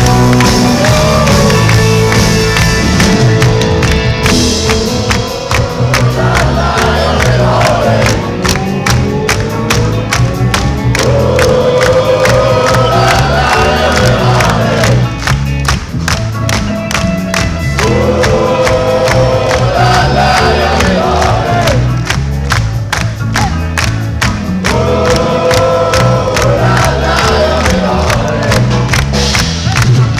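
Live rock band playing loudly, heard from inside the crowd: a steady pounding beat, with sung phrases about every six seconds and crowd voices and hand-clapping mixed in.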